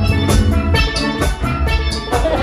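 Live steel pan band music: the steel pan is struck in quick runs of ringing notes over electric bass guitar and a steady beat.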